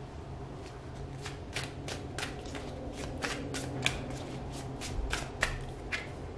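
A deck of tarot cards being shuffled by hand: a run of quick card flicks, about four a second, that stops shortly before the end.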